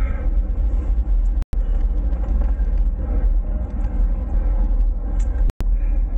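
Wind buffeting the handlebar-mounted camera's microphone while riding a bicycle: a steady low rumble, cut by two brief dropouts to silence about a second and a half in and near the end.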